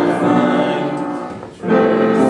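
A congregation singing a hymn together in held, sustained notes, with a brief break about a second and a half in before the next line begins.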